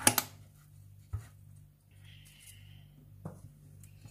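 Sharp click as the side latch of a metal springform cake pan is snapped open, followed by a lighter knock about a second later, a brief scrape, and another knock a bit after three seconds as the ring is worked free and set down.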